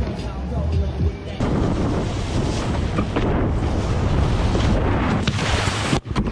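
Loud rushing of water spray and wind over a wakeboarder's action camera as it is towed across the water, starting abruptly about a second and a half in. Faint background music before it.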